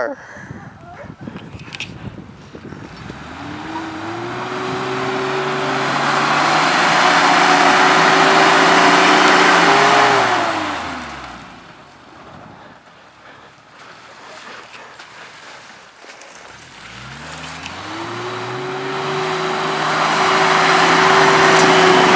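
Lifted Jeep Cherokee XJ's engine revving hard under load as it climbs a steep dirt hill. The revs climb to a high, held pitch with a rush of noise, drop away about ten seconds in, then rise again after a few quieter seconds and hold high.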